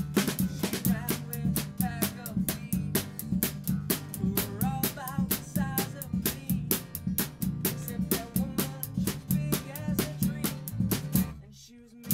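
Live band playing an upbeat song: a Ludwig drum kit driving with snare and bass drum, with acoustic guitar and electric bass. Near the end the whole band stops together for under a second, then comes back in.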